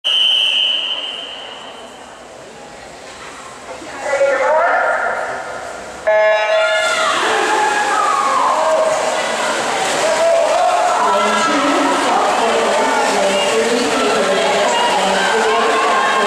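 Swim-meet start: a short high tone, then the electronic start horn sounds suddenly about six seconds in. Spectators cheer and shout through the rest, over splashing from the backstroke swimmers.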